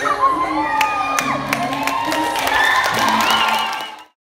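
A group of young girls cheering and shrieking together, with high whoops and a few sharp claps. The sound cuts off suddenly near the end.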